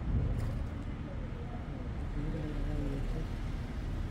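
Steady low outdoor background rumble, with faint distant voices about halfway through.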